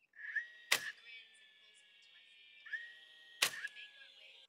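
Cordless nail gun firing two nails into a wooden board, the shots about 2.7 seconds apart. Each shot is preceded by a whine from the tool that rises and then holds steady.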